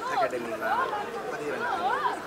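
Indistinct background voices and chatter, with high rising-and-falling calls and no clear words.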